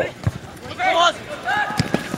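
Short shouted calls from men on a football pitch, with a brief low knock early and a sharp thud near the end.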